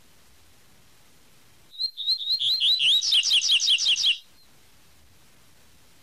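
Double-collared seedeater (coleiro) singing one phrase of its 'tui tui' song, starting about two seconds in: a few high whistled notes, then a quick run of repeated slurred notes, lasting about two and a half seconds.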